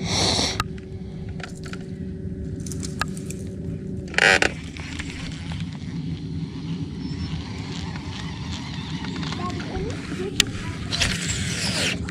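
Sounds of fishing from a boat with a baitcasting rod: a steady low hum with a thin whine that cuts off about four seconds in, and two brief rushes of noise, one at the start and one about four seconds in.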